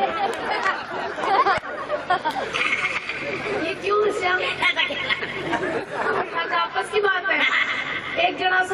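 Speech only: stage performers talking back and forth into microphones over a public address system.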